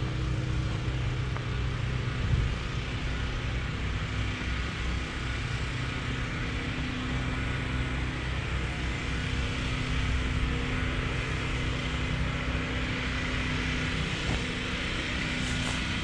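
An engine running steadily: a low, even hum with broad noise over it, unchanging throughout.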